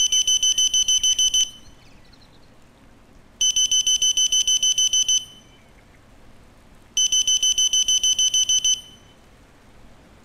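Electronic alarm clock beeping: rapid high-pitched beeps in three bursts of a little under two seconds each, about three and a half seconds apart, the alarm going off to wake a sleeper.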